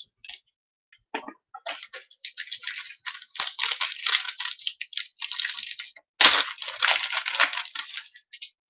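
Foil trading-card pack being torn open and its wrapper crinkled by hand, in two long crackly stretches; the second starts abruptly about six seconds in and is the loudest.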